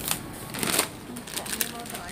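Indistinct background voices with short bursts of rustling and rattling from a shopping trolley being pushed, about a second apart.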